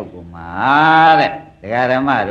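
A man's voice holds one long drawn-out vowel for about a second, rising and then falling in pitch, in the middle of a recorded Burmese sermon. Speech picks up again near the end.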